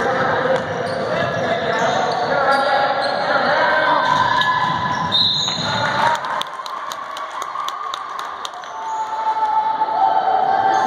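Girls' basketball game in a gym: crowd and player voices over the play. A short, high referee's whistle sounds about five seconds in. It is followed by a quick run of sharp basketball bounces on the hardwood floor.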